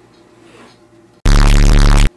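A sudden, extremely loud, distorted blast lasting under a second, starting just past a second in and cutting off sharply: an edited-in comedy sound effect. Before it, only faint room tone.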